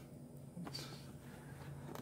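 Quiet room tone with faint hand handling of a trading card, and a light tap near the end as the card is set down.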